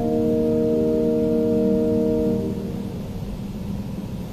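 Church organ holding a sustained chord that is released about two and a half seconds in, leaving low, steady room noise.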